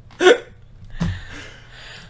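A person's short, hiccup-like vocal squeak about a quarter second in, followed about a second in by a sharp knock and a breathy exhale.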